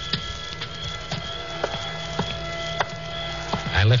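Radio-drama sound effect of footsteps on a paved walk, about six slow steps, under background music holding a sustained chord.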